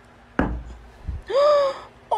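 A single dull thud about half a second in, as the ice-cream scoop hits the floor and splats, then a short, high cartoon-voice gasp that rises and falls in pitch.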